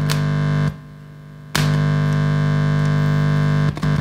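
Loud mains hum buzzing through a Celestion Ditton 33 speaker, driven by an EL34 push-pull valve amplifier with the volume right up and picked up by a film capacitor, held in the hand, on the amp's input. It drops to a quieter hum about a second in, comes back loud half a second later and dips briefly near the end as the capacitor's clip leads are handled. How loud this hum is tells which end of the capacitor is the outer foil: it is quieter with the outer foil on the earth side.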